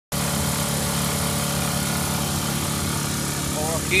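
Honda EU16i inverter generator's small single-cylinder four-stroke engine running at a steady speed, an even, unchanging hum.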